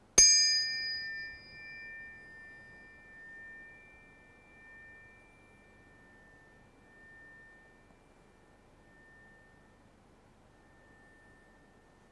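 A pair of tuning forks, one tuned to the heart meridian and one to the kidney, struck together once. They ring out as two high pure tones. The higher tone dies away after about six seconds, and the lower one keeps ringing faintly with a slow pulsing waver.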